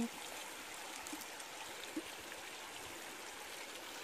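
Steady, fairly faint rush of a flowing river.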